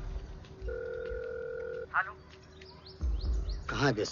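A single steady electronic beep lasting about a second, followed by brief voices near the end.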